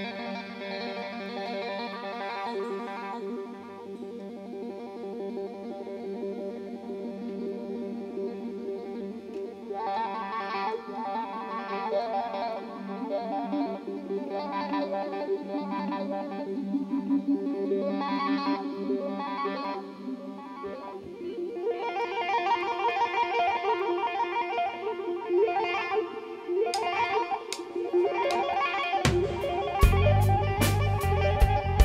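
Live rock band playing the slow opening of a song: long, held electric guitar notes and chords without drums, building gradually. Near the end, sharp drum and cymbal hits come in, and the bass and drums join about a second before the end.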